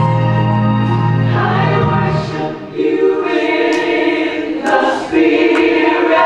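Gospel choir singing over held organ-like chords. A low sustained chord carries the first two seconds, then the choir comes in strongly about three seconds in, in phrases, with a few sharp cymbal ticks.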